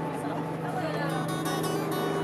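Acoustic music with plucked strings and steady held notes, with people talking over it.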